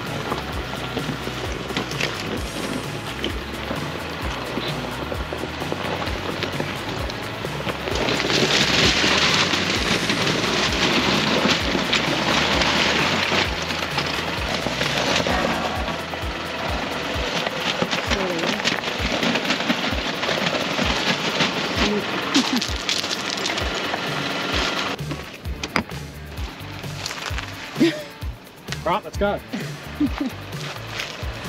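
Background music with singing. About five seconds before the end it drops out, leaving scattered crunches and knocks on stony ground.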